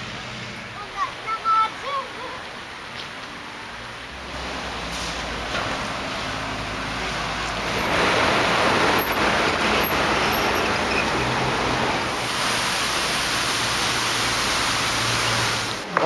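Road traffic noise: a steady rush that builds from about four seconds in and is loudest in the second half, with a low hum in the last few seconds. Brief faint voices about a second in.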